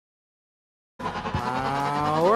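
Silence, then about a second in the arena sound cuts in abruptly: a sustained pitched electronic tone over hall noise, slowly rising in pitch, typical of the field's match-start sound effect.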